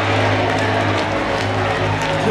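Live gospel band music with steady held low notes, under crowd noise from a large audience.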